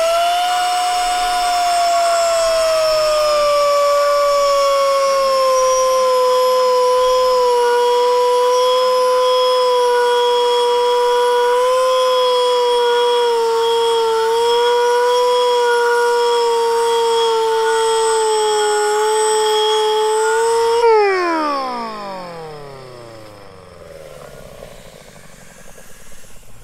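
Pneumatic angle grinder with a 4.5-inch tungsten-alloy milling disc cutting into an aluminium plate: a loud, steady, high whine whose pitch sags as the disc takes load and wavers as it is pushed along the plate. About 21 seconds in, the air is cut and the whine falls away as the disc spins down.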